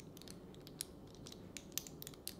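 Faint, scattered small clicks of gold metal lipstick cases (Hourglass Confession Ultra Slim) being picked up and handled, one a little before the middle and a couple more near the end.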